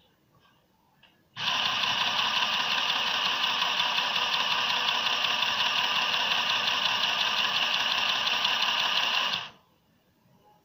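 Irit mini electric sewing machine running steadily, stitching fabric with a fast, even chatter of the needle. It starts suddenly about a second in and stops abruptly just before the end.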